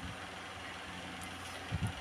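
Steady low background hum and hiss, with a few faint strokes of a ballpoint pen on paper.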